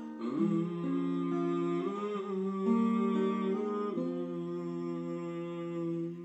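Acoustic guitar playing held chords that change about once a second, with a man humming a wavering melody over them through the first two-thirds.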